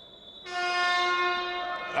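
Basketball arena buzzer giving one steady, unwavering tone for about a second and a half, starting about half a second in. It signals a substitution during a stoppage in play.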